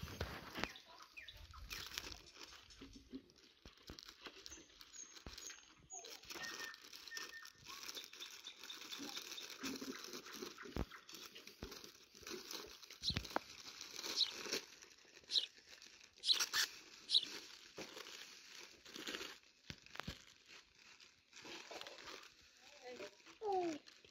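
Thin clear plastic bags crinkling and rustling as pieces of fried pastry are packed into them by hand.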